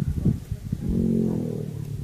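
An animal's low, drawn-out moan lasting about a second, starting a little under a second in. Before it there are low rumbling knocks.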